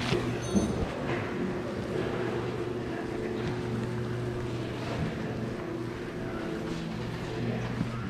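A steady mechanical hum with a few held low tones over a wash of background noise, with a couple of faint clicks near the start.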